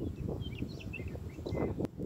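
A few faint, short bird chirps over a low steady outdoor rumble, with a single click near the end.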